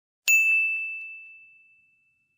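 A single bell-like ding chime, struck once about a quarter second in, ringing on one high pitch and fading out over about a second and a half.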